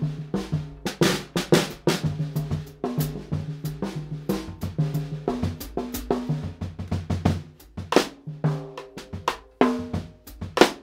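Gretsch drum kit with calfskin batter heads played freely: strokes moving around the toms, snare and bass drum, the toms giving short pitched ringing notes. The playing thins out briefly around two thirds of the way in, then picks up with harder strokes.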